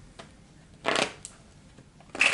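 A tarot deck shuffled in the hands: one short riffle of the cards about a second in, with a couple of faint ticks around it.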